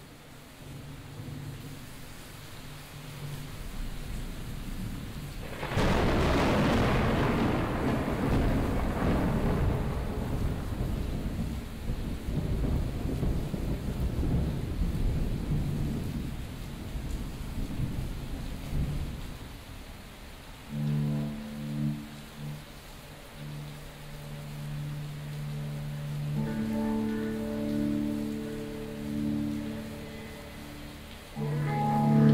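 A thunderclap over rain: a rumble builds, then a loud crash about six seconds in rolls away over some ten seconds. From about twenty seconds in, low sustained instrument notes come in as the music starts.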